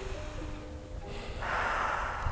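Soft background music with long held notes; about a second and a half in, a person takes a deep, audible breath close to the microphone.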